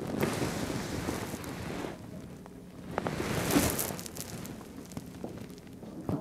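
Soft rustling of clothing and handling noise, in two stretches with a few small clicks in between.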